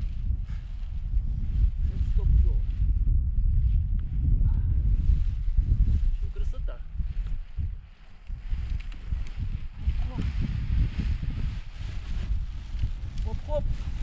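Wind buffeting the microphone in irregular gusts, with faint voices at times.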